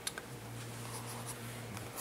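Graphite pencil scratching across drawing paper in short sketching strokes. A low, steady hum sits underneath for most of it.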